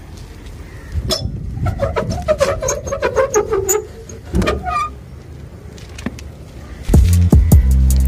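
Rusty steel barrel bolt on a generator canopy door scraping and squeaking with a run of metal clicks as it is slid back, with a second short clatter a little later. Near the end, background music with a heavy bass beat comes in.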